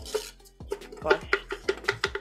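A string of light, irregular knocks and taps, about five or six in two seconds, from cardboard kaleidoscope tubes being handled and tapped as their parts are pushed into place.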